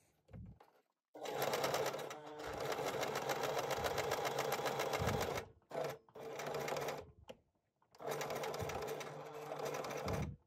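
Electric domestic sewing machine topstitching along a fabric edge, running at a steady speed in three runs: a long one of about four seconds, a short one, then another of about two seconds, with brief stops between.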